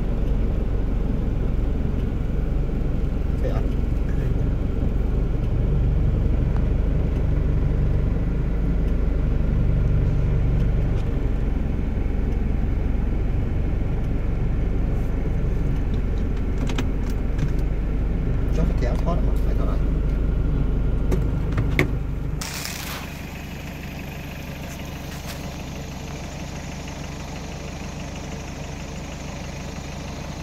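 Jeep Wrangler on the move, a steady low rumble of engine and road noise. About three-quarters of the way through it cuts off with a click, leaving a quieter steady engine hum like idling.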